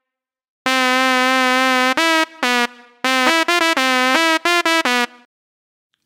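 Synthesized shehnai patch on Reason 9's Malström synthesizer, built on a sawtooth oscillator, playing a short melodic phrase with a bright, reedy, buzzy tone. It starts a little under a second in with one held note of about a second, then a run of quicker notes stepping between a few nearby pitches, ending about five seconds in.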